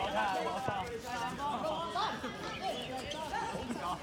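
Overlapping shouts and calls of dodgeball players and onlookers, several voices at a distance, none of them clearly worded.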